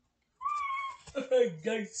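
A young child's high, meow-like cry held for about half a second, followed by lower vocal sounds that fall in pitch and a short laugh near the end.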